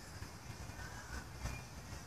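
Low steady outdoor rumble with faint thin high squeals and a few soft knocks.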